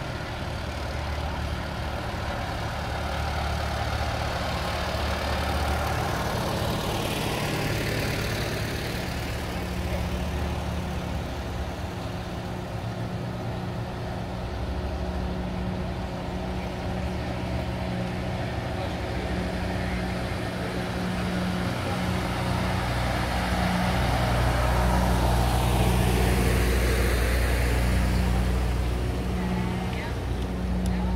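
Old farm tractor engines running slowly as the tractors drive past one after another, a steady low engine note that swells twice, loudest near the end as a tractor goes by close.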